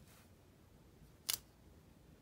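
A single short, sharp click against a quiet background a little past halfway, from fingers handling and pressing a sticker onto a paper planner page.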